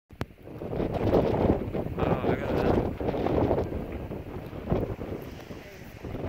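Wind buffeting the microphone in gusts, a low rumbling rush that swells and eases, with a single click at the very start.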